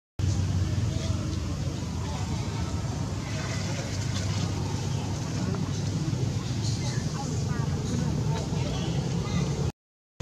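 Steady low rumble of outdoor background noise, with faint voices in the distance.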